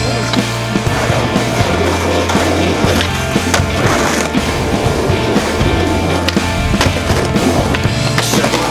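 Rock music with a steady bass line, with skateboard sounds mixed in: wheels rolling on pavement and sharp clacks of the board hitting the ground.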